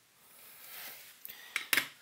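Soft hiss of flux and solder sizzling as a soldering iron tins the twisted strands of a wire, followed by a few small sharp clicks of metal tools handled on the bench, the loudest shortly before the end.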